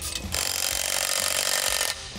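Cordless power tool running a bolt in a short burst of about a second and a half, starting and stopping abruptly.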